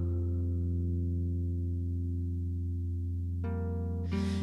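Electric harp music run through a loop pedal: a steady drone of held low notes, the higher ones fading away, then a new brighter note comes in sharply about three and a half seconds in.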